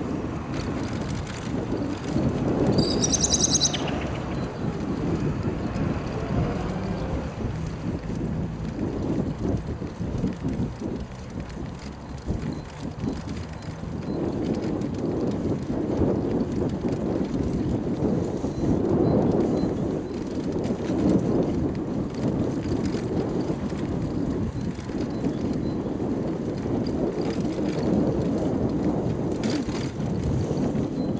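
Wind buffeting the microphone of a camera carried on a moving bicycle, an uneven low rumble mixed with tyre and road noise. A brief high chirping comes about three seconds in.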